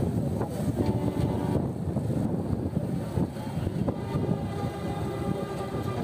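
Engine of a loaded Mazda livestock truck running with a steady low rumble as the truck reverses.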